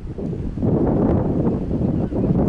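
Wind buffeting the microphone, a low gusting rumble.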